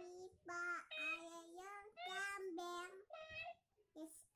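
Yellow plush dancing duck toy's speaker, a high child-like voice singing a short tune in held notes of about half a second each, with brief gaps between them.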